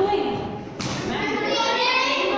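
Speech: a woman reading aloud, with children's voices, and a single thump a little under a second in.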